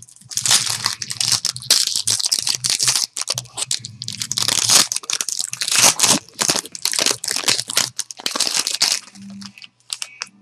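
Foil trading-card pack wrapper being torn open and crinkled by hand, a dense run of crackling that stops near the end.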